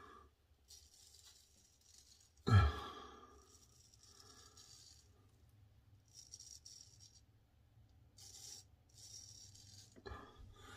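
Ribbon 1000 straight razor scraping through lathered stubble in short strokes, a faint crackling rasp. About two and a half seconds in comes a brief loud thump.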